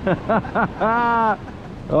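A man laughing: a few quick 'ha's, then one longer drawn-out laugh.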